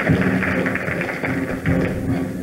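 Live pit orchestra playing a stage-musical number, with fresh accented chords at the start and again near the end.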